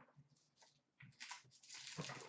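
Faint rustles and soft scuffs of trading cards and cardboard being handled, a few early on and more in the second half.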